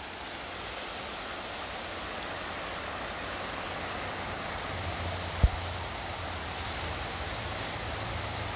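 Rocky mountain stream rushing steadily over stones, with one sharp low thump about five and a half seconds in.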